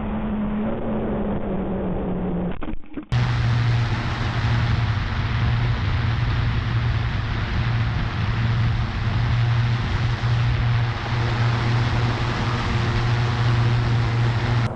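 Audio from the aircraft's onboard FPV camera link: a steady rushing hiss with a low hum. For the first three seconds the hum slowly drops in pitch. After a brief dropout, the hiss comes back louder with a constant low hum.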